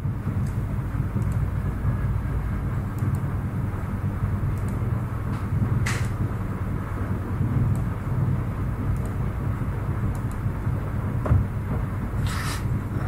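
Steady low background rumble with no speech, broken by a faint click about six seconds in and another near the end.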